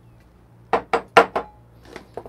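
Glass coffee jug knocking and clinking against a wooden tabletop as it is handled and set down: about four sharp knocks in quick succession past the middle, with a brief faint ring after the last.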